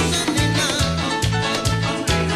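Tropical dance band playing live: a bass line, congas and percussion on a steady, even dance beat.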